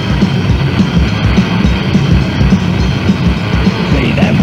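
Instrumental passage of a lo-fi 1980s death/doom metal demo recording: distorted guitars over a steady drum beat, with no vocals.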